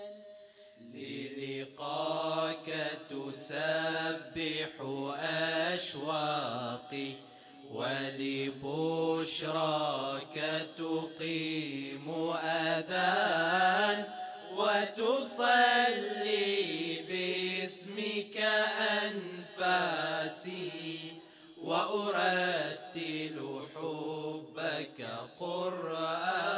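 Male nasheed group singing an Arabic religious chant together into microphones. The singing comes in sung phrases a couple of seconds long with short breaks between them, and starts about a second in.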